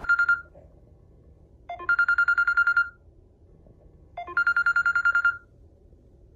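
Smartphone alarm ringing: bursts of rapid electronic beeps, each burst about a second long and repeating every two and a half seconds.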